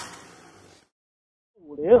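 A soundtrack fading out in the first half second, then near silence, broken near the end by one short spoken word.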